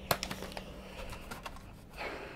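Plastic blister pack of a quartz clock movement being handled and opened: a few sharp clicks just after the start, then soft crackling of the plastic.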